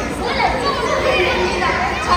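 Children's voices speaking, several at once.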